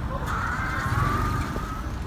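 Street traffic rumble, with a high, slightly falling squeal lasting about a second and a half.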